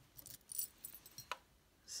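Small metal costume-jewelry pieces clinking together as they are handled and picked up: a scatter of light, high clicks and jingles over about a second and a half, with one sharper clink near the end.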